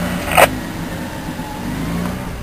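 Off-road 4x4's engine running steadily at low revs, heard from inside the cabin, as the vehicle descends a sand dune in first gear low range with no braking, held back by the engine. A brief sharp sound about half a second in.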